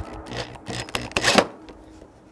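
Cordless drill driving a screw-in gutter spike through an aluminum gutter into the wood behind it, the motor running in uneven bursts with the loudest just past a second in, then stopping.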